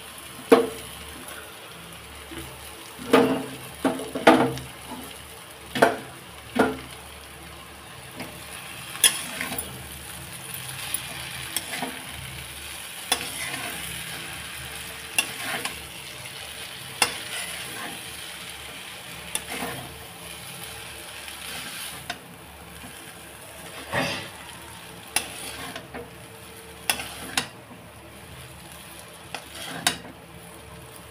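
Boiled noodles being stirred and tossed with vegetables in a kadai, a spatula scraping and knocking against the pan over a low sizzle. The strokes come thick and fast for the first several seconds, then more scattered.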